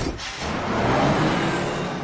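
A bus pulling away from the kerb, its engine speeding up under a rushing noise that swells to its loudest about a second in, then eases.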